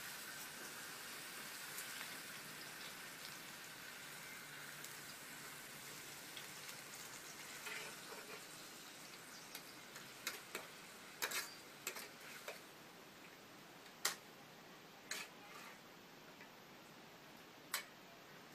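Water spinach sizzling in a hot steel wok with fried beef, the hiss fading gradually over several seconds. In the second half, a metal ladle clinks and scrapes against the wok a number of times as the greens are stirred.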